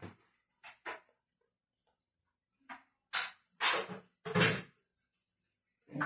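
Six short scraping and clattering sounds, about a second apart, from a metal spatula working a frying pan of fried eggs; the last three, nearer the middle, are the loudest.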